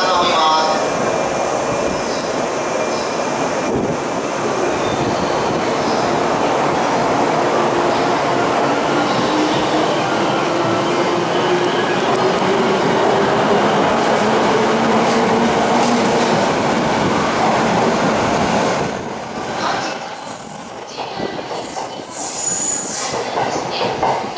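JR 485 series electric train departing and accelerating past on the platform: loud, steady rolling noise with a whine slowly rising in pitch as it gathers speed. The sound drops away about 19 seconds in as the last car passes.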